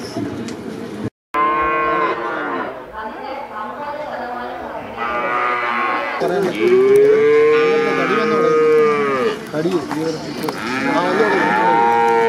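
Cattle mooing repeatedly in several long, drawn-out moos. The longest and loudest starts about six seconds in and lasts around three seconds.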